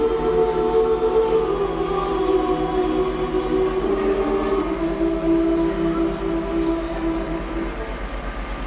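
Mixed choir singing a cappella, holding long sustained chords that change pitch a couple of times midway and end just before the close, the final chord of the song before applause.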